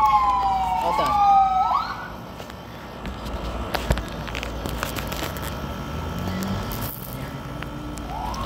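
An emergency-vehicle siren wailing, its pitch sliding down and then sweeping sharply back up before it fades about two seconds in. After that, a few sharp knocks and taps from a phone being handled.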